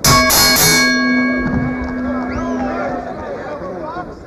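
Boxing ring bell struck several times in quick succession, then ringing on and slowly dying away over a few seconds: the bell that opens the first round.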